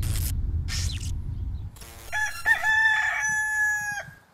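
A rooster crowing once, a long cock-a-doodle-doo that rises at first and then holds one steady pitch to a sudden stop. Before it, a loud low rumble with two short hissing swooshes fills the first second and a half.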